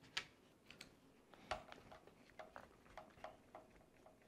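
About a dozen faint, light clicks as a hex driver turns the 2.5 mm screws holding the sway bar out of the plastic rear bumper of a Traxxas Slash 4x4 RC truck. The first click is the loudest, and several leave a brief ring.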